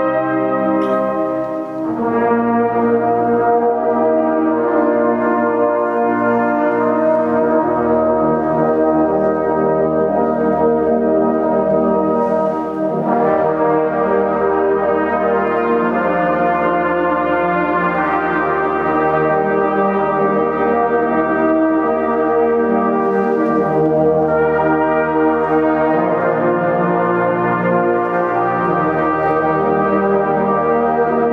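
Brass ensemble of trumpets, trombones and tuba playing slow, sustained full chords, moving to a new chord every few seconds.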